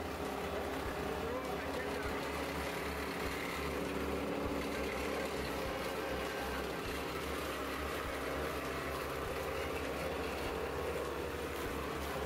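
Electric-motor-driven chaff cutter running steadily while green plant stems are fed into it and chopped, a continuous mechanical hum with a few steady tones.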